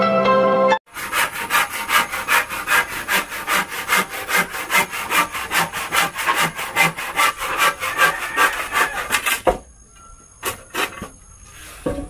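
Hand saw cutting through a wooden plank in quick, even back-and-forth strokes, about four to five a second. The sawing stops near the end, followed by a few light knocks.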